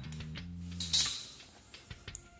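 Background music with a soft guitar-like tone, and about a second in a sharp metallic clink that rings briefly: a steel ruler being set down on a hard floor.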